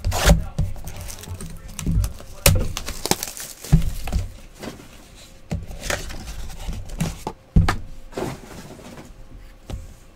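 Small cardboard trading-card boxes being handled and set down on a table mat: several sharp knocks and thuds with rustling of cardboard in between.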